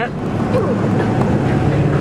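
Steady road and engine noise inside the cabin of a moving truck at highway speed, with faint voices under it.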